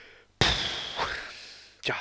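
A man puffs out a long breath, a 'puh' sigh, close to the microphone. It starts suddenly with a breath pop on the mic and fades over about a second, and a short spoken 'ja' follows near the end.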